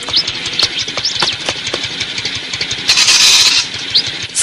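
Cartoon motor scooter engine idling with a fast, uneven putter, and a short hissing burst about three seconds in.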